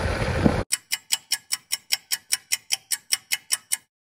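Background noise cuts off abruptly, then a rapid, even ticking of about five sharp clicks a second runs for some three seconds over dead silence and stops.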